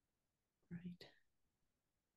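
Near silence, broken about halfway through by one brief, quiet vocal sound from a person, a short murmur or start of a laugh.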